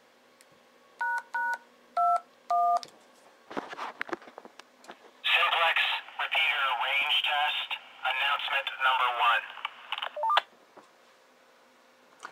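Four DTMF touch-tone beeps are keyed into a handheld radio in quick succession. These trigger a simplex repeater to play back a recorded voice announcement over the radio, narrow-sounding radio audio lasting about five seconds and ending in a short beep.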